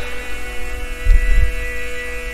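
A steady hum of several held tones during a pause in the talk, with a brief low thump about a second in.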